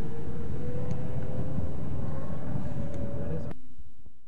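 Cabin noise of an electric car built on a Renault chassis with a DC traction motor, in motion: a steady road rumble with a faint whine that slowly rises in pitch as it gathers speed. The sound cuts off abruptly about three and a half seconds in.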